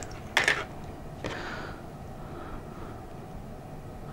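An XT60 connector being plugged into a LiPo battery: two short clicks about half a second and a second and a quarter in, then a faint hiss. The buck regulator on the lead is wired with reversed polarity, and this plug-in burns it out.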